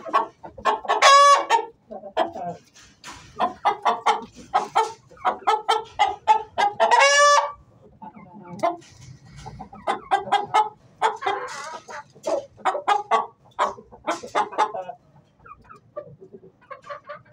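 Aseel chickens clucking in rapid runs of short calls, with two loud drawn-out calls, one about a second in and one around seven seconds in.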